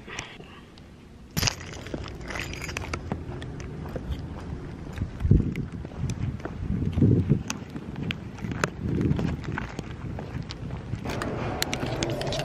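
Footsteps on concrete with handling noise from a handheld camera being carried: scattered clicks and a few dull thumps.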